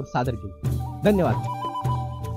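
A voice speaks briefly, then music comes in about half a second in, with a melody line that moves in small steps.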